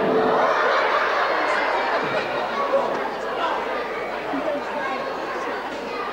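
Theatre audience laughing and chattering together, loudest at first and slowly dying down.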